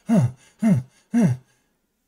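A man's voice making three short wordless vocal sounds about half a second apart, each falling in pitch, mimicking a runner straining to hang on to a speeding treadmill.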